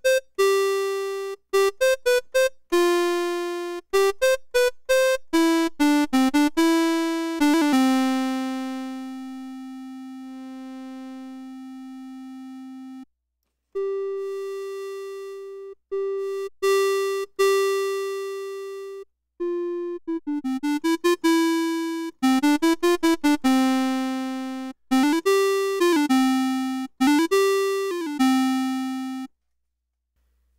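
Moog System 55 modular synthesizer playing a clarinet-like voice one note at a time. Each note starts sharply and fades away, and one long note is held for several seconds. The brightness of the notes follows their loudness, because the lowpass filter is emulated with a pulse wave mixed in by a VCA. In the second half several notes slide up and down in pitch.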